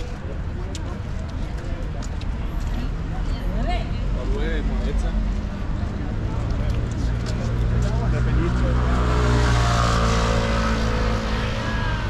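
Street ambience with a car passing on the road alongside: its engine and tyre noise swell to a peak about ten seconds in, then fade. Snatches of passers-by talking come and go.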